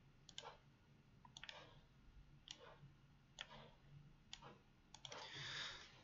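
Near silence with faint computer-mouse clicks, about one a second, as text on screen is underlined, then a soft breath just before speech resumes.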